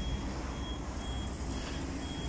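City street traffic, mainly a steady low rumble from a trolleybus passing close by. Over it a faint high beep repeats about every half second.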